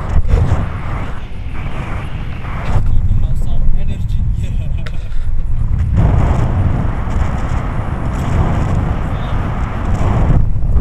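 Wind rushing over the camera's microphone in paraglider flight: a constant heavy low rumble, turning fuller and hissier about six seconds in.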